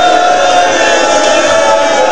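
A male zakir's voice chanting a long held note through a microphone, wavering slightly and dropping a little in pitch about halfway through.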